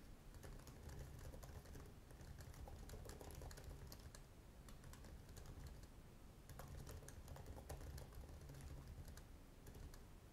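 Faint computer keyboard typing: a quick, uneven run of key clicks over a steady low hum.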